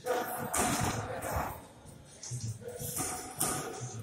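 Background music and voices, over boxers' feet shuffling on the ring canvas and a few sharp slaps from sparring.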